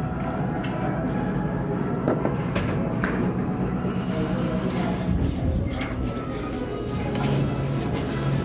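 Restaurant dining-room ambience: a steady background murmur of other diners' voices with a few sharp clinks of dishes and cutlery.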